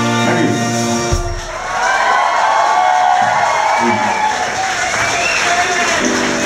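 A rock band's final held chord rings out and cuts off with a thump about a second in, then the audience cheers and applauds.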